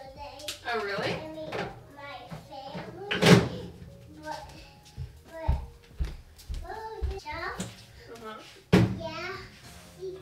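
A woman and a toddler talking back and forth, with two sharp knocks, one about a third of the way in and one near the end.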